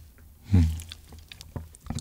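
Close-miked mouth chewing a cheese ball, soft and wet, with small scattered mouth clicks.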